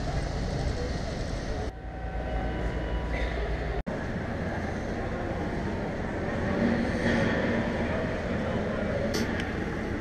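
Railway station ambience: a steady din of background voices and rumble, broken off sharply twice.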